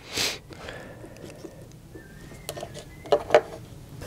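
Hands handling heavy battery cables and their metal lugs. There is a short rustle just after the start, then a few small clicks in the second half as the lugs are fitted together.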